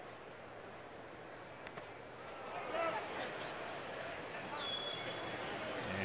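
Ballpark crowd murmur with faint scattered voices, swelling slightly from about two seconds in; a brief high tone sounds near the end.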